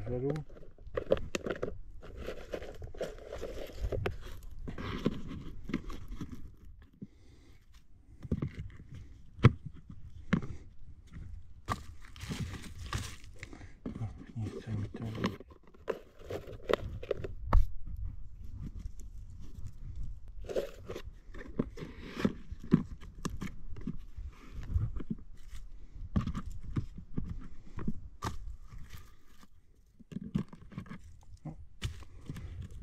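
A small plastic box with a green clip-on lid being handled by hand: crinkling and rustling of plastic and its contents, with frequent sharp clicks and knocks as the lid and box are worked.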